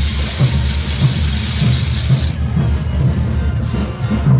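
Parade band music with a regular bass-drum beat, mixed with the continuous rattle of morenada dancers' spun matracas (wooden ratchet noisemakers), which stops about two seconds in.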